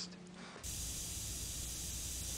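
Steady hiss of recording noise with a low hum underneath, starting abruptly about half a second in, with a few faint ticks: the noisy lead-in of a lo-fi track before the music starts.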